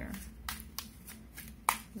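A deck of tarot cards being shuffled by hand: a run of short, crisp card clicks, the sharpest one near the end.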